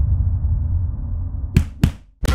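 Soundtrack sound design: a low bass drone, then two sharp whip-like hits about a quarter second apart near the end.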